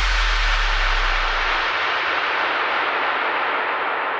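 Electronic dance music transition effect: a loud white-noise sweep whose top slowly falls and fades, over a deep sub-bass boom that dies away before two seconds in.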